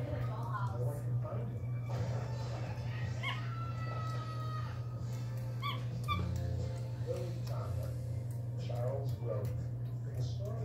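Capuchin monkey giving short high squeaks and chirps, some drawn out like thin whistles, while it eats. A steady low hum runs underneath.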